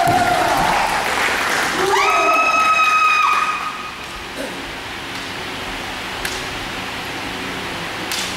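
Kendo kiai shouts: a shout trailing off at the start, then one long, high, held kiai from about two seconds in, lasting about a second and a half. After it the hall goes quieter, with only a faint background hum and one light tap.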